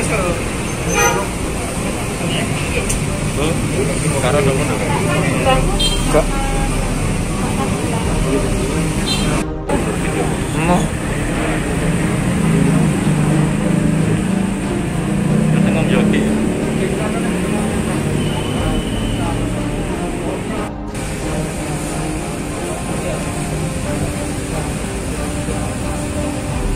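Indistinct background voices of a gathered group over a steady wash of road-traffic noise; the sound cuts out for an instant twice.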